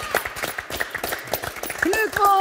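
A small group applauding, with irregular hand claps throughout, and a voice cheering near the end.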